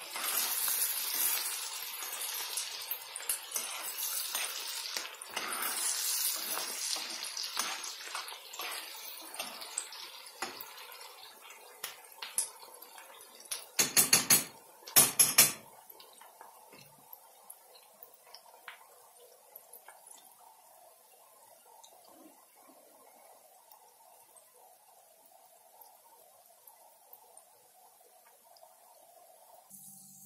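Metal spoon stirring and scraping pork cracklings and onion frying in a skillet, with sizzling, for the first dozen seconds. Two short bursts of metal clatter come about fourteen and fifteen seconds in, then only a faint steady sizzle remains.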